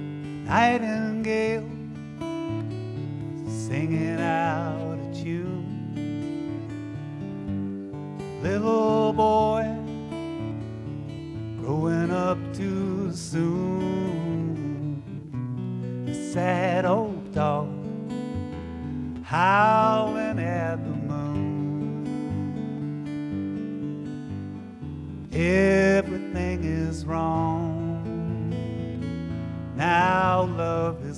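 Live acoustic music: a man singing wavering, drawn-out phrases over a strummed acoustic guitar.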